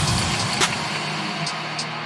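A car sound effect, steady engine and road noise, laid into a grime beat's intro, with a sharp hit about half a second in and light ticks near the end.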